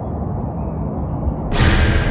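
Steady low outdoor rumble. About one and a half seconds in, a sudden louder, brighter sound with several held tones cuts in.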